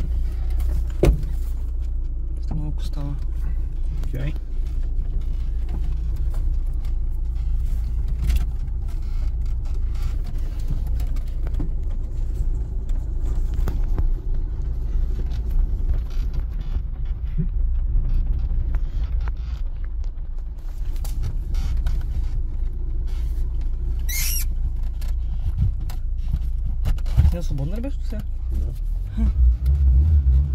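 Cabin sound of a Lada Samara 1500's four-cylinder engine running at low revs while the car crawls over a rough dirt track: a steady low drone under frequent clicks and knocks from the body and suspension. A brief high squeak comes about three-quarters of the way through.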